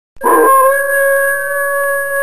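A single long howl, a dog or wolf howl sound effect, starting abruptly a moment in and then held at a nearly steady pitch.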